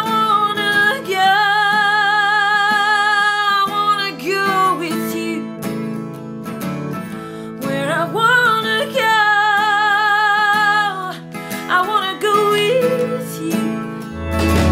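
Country-folk song: a woman sings two long, wavering held notes over strummed acoustic guitar.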